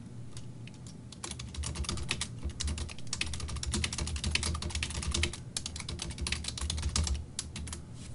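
Typing on a computer keyboard: a run of keystrokes, sparse at first, then fast and steady, with brief pauses about five and seven seconds in.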